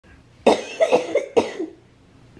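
A woman with cystic fibrosis coughing, two bouts about a second apart, the first a quick run of several coughs; her lungs are feeling the effects of Covid.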